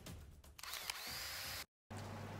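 Intro sound effect under a channel logo: the end of the intro music gives way to a whirring, hissing sweep with a tone that slides down and then holds. It cuts off suddenly into a moment of dead silence.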